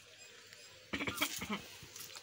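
A short bleating cry starting about a second in and lasting well under a second, over quiet background.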